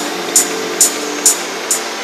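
Techno track from a DJ mix: a sharp, bright percussion hit on every beat, a little over two a second, over sustained synth tones, with no deep kick or bass.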